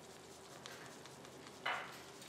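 Potato bhaji in a spiced tomato gravy simmering faintly in a pan, with a few small crackles, and one short hiss near the end.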